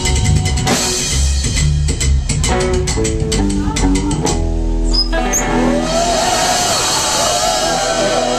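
Live psychobilly band with upright double bass, electric guitar and drum kit playing fast, with busy drum strokes and a stepping bass run. About halfway through the drumming stops and a held chord rings on.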